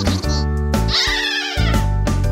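Children's song backing music with high squeaky cartoon sound effects laid over it. One of them is a squeal that falls in pitch about a second in.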